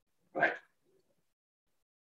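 A man's single short spoken word, "right?", then near silence.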